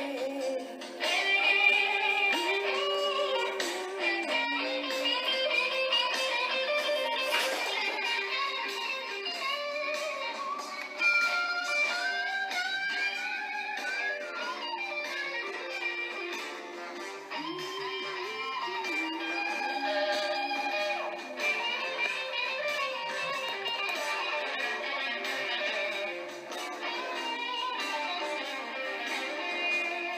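Instrumental break in a slow blues-rock song: an electric guitar plays a melodic solo line with bent, gliding notes over the backing band.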